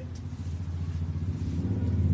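A low, steady motor hum that slowly grows louder.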